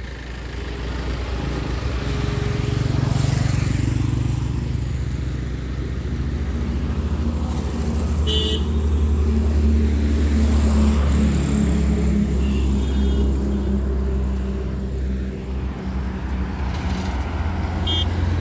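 Car engines running with a steady low rumble of road noise from a convoy of vehicles on a highway, and a brief horn toot about eight seconds in.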